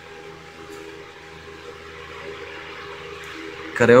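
Steady low background hum and hiss. A man's voice starts speaking near the end.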